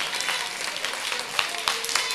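Congregation applauding with scattered, irregular claps, and a few voices briefly calling out.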